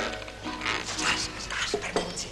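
Film soundtrack music with a few short dog barks over it, about a second apart.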